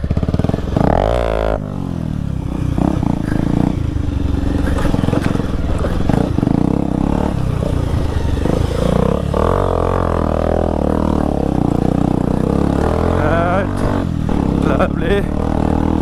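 Modified Bajaj Pulsar 180's single-cylinder engine running under load while being ridden off-road over sand and a dirt track. The engine pitch rises and falls as the throttle is worked.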